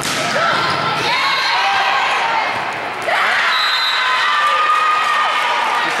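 A volleyball spiked at the net with a sharp hit right at the start, then sneakers squeaking on the gym floor while players and spectators shout, louder again about three seconds in as the point is won.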